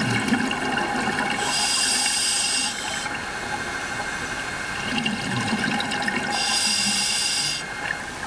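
Scuba diver breathing underwater through a regulator: two bursts of exhaled bubbles, each lasting just over a second, about five seconds apart.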